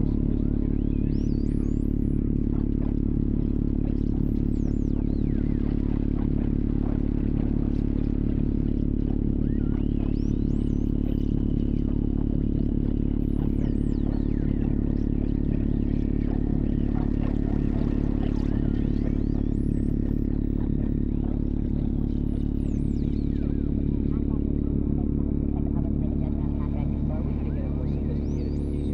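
Ambient dub electronic music: a dense, steady low drone with a fast fluttering pulse in the bass, sparse gliding high electronic squiggles, and long held high tones that come and go.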